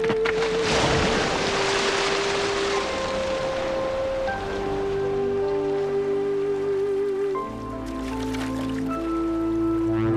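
Background music score of slow, sustained melody notes, one of them held with a vibrato, over a low accompaniment that deepens about seven seconds in. A broad hiss swells in and fades over the first few seconds.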